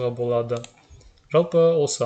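A man's voice narrating in Kazakh, with a short pause about the middle.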